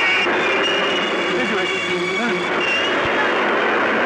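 Busy street traffic: a steady rush of vehicle noise with people's voices calling over it.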